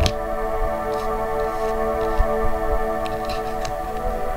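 Ambient background music of steady held tones, with a few light clicks and taps of tarot cards being handled and laid down, irregularly spaced.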